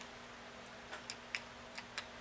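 Plated 00 buckshot pellets clicking as they are dropped by twos into a shotshell wad: about half a dozen light, sharp clicks.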